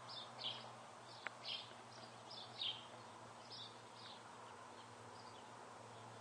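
Faint chirping of small birds, a string of short calls that thins out after the first few seconds, over the low steady hum of the small circulation pump; one sharp tick a little over a second in.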